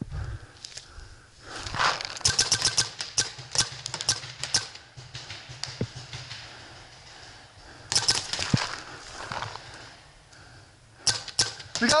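Paintball markers firing quick strings of shots, each a sharp pop: a long burst about two seconds in, another about eight seconds in, and a few more shots near the end.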